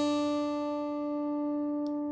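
Open high E string of a 1966 Martin D-28 acoustic guitar ringing as one plucked note, holding steady and fading only slowly: a long sustain.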